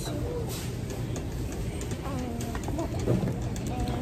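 Indistinct background voices, with a steady low hum underneath.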